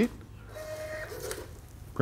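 Self-check kiosk's receipt printer printing a receipt: a steady tone lasting about half a second, then a brief buzz as the paper feeds.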